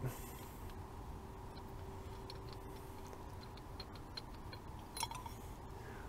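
Faint small metallic clicks and light scraping as the knurled aluminium bottom cup of a J&L oil catch can is unscrewed by hand, with a slightly louder click about five seconds in, over a faint steady hum.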